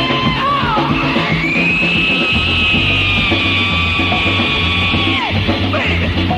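Disco-funk DJ mix music with a steady bass line. A long held high note comes in about a second in and slides down and stops just after five seconds.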